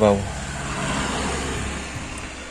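A road vehicle going past: a steady rush of tyre and engine noise that thins out near the end.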